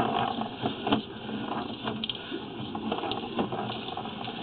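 Sewer inspection camera's push cable being drawn back through the pipe, giving an irregular mechanical clicking and rattling.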